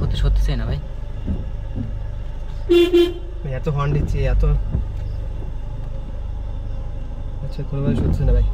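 A car horn sounds once, briefly, about three seconds in, over the steady low rumble of the car driving, heard from inside the cabin.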